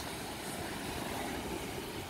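Steady rush of ocean surf breaking on a sandy beach.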